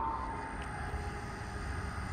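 Low rumble and noise of a Brightline passenger train fading away as it recedes after crossing the bridge at speed.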